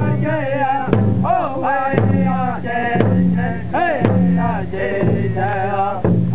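Powwow drum group: several men singing together in wavering, gliding voices over a large shared drum, struck in a slow, steady beat about once a second.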